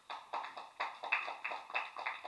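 A few people clapping briefly, in a quick irregular run of sharp claps, about four or five a second.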